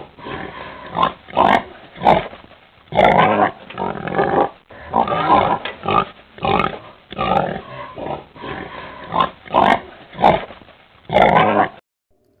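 Pig grunting and oinking in a long string of separate calls, about one a second, some rising into higher squeals; the calls stop just before the end.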